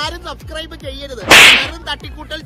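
A single sharp, hissy swish-like burst, short and loud, about a second and a half in, over music and voices.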